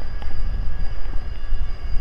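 Outdoor rumble from a high open vantage point: wind on the microphone, uneven and strongest in the low end, over the distant hum of town traffic.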